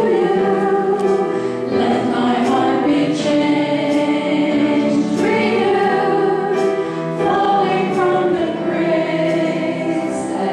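Church praise team performing a worship song: voices singing long held notes together over grand piano accompaniment.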